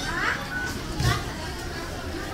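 Background voices of people in a busy station concourse, with a short high call that rises in pitch just after the start and a dull knock about a second in.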